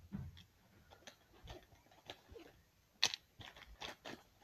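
Faint rustling and light clicks of school supplies being handled, with one sharper click about three seconds in.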